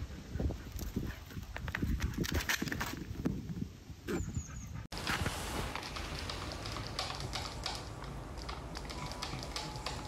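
Two small ponies galloping over grass: irregular hoofbeat thuds and knocks for the first five seconds or so. This stops suddenly at a cut and gives way to a steady, even background hiss with scattered small clicks around a sleeping dog.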